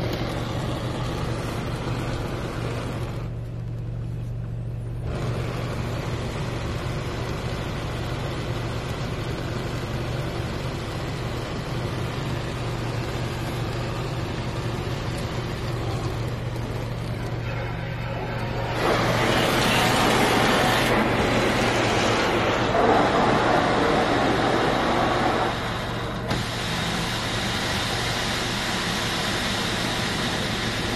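Rinse water from a Belanger Vector Rapid Wash in-bay automatic car wash spraying onto the car, heard from inside the cabin as a steady hiss over a low hum. The spray grows clearly louder for about seven seconds past the middle, then eases.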